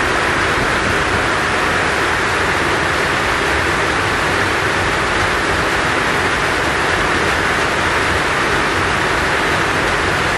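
Heavy rain falling on a metal roof, heard from underneath as a loud, steady, unbroken hiss.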